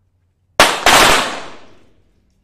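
.22 sport pistol shots in a 25 m pistol final: two sharp, loud shots about a quarter second apart, just over half a second in, each ringing out with a long echo that fades over about a second.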